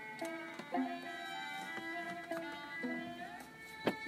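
Looped, layered violin holding long, smooth notes in one key, with a few light clicks from the bow tapping on the strings and a sharper click near the end.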